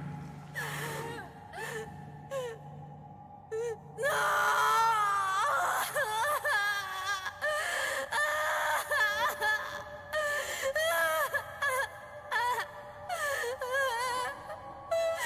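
A young woman sobbing and wailing in distress over a sustained music score; the crying turns loud about four seconds in.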